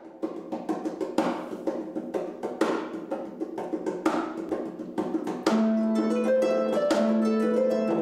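Harp music: a quick run of plucked notes, and about five and a half seconds in the music gets louder as long held notes join the plucking.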